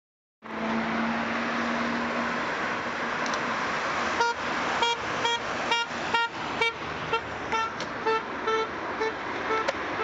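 Steady outdoor traffic noise with a vehicle horn sounding in short repeated toots, about two a second, starting about four seconds in and fading toward the end.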